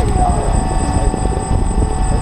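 DJI Phantom quadcopter's motors and propellers spinning steadily while it still rests on the ground: a steady high whine over low rushing prop wash buffeting the onboard camera's microphone.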